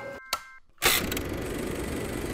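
A few bell-like chime notes fading out. About a second in, a dense, steady mechanical whirring rattle starts abruptly.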